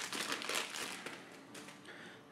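Clear plastic bag crinkling faintly as a coiled AV cable is pulled out of it, the rustle dying away toward the end.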